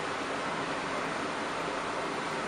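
Steady, even rushing noise of running machinery in the inspection vehicle, with no distinct events.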